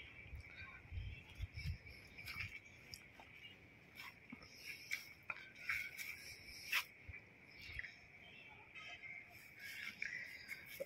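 Faint outdoor garden ambience: a steady high-pitched hum, with scattered light clicks and rustles and a few soft low bumps in the first couple of seconds.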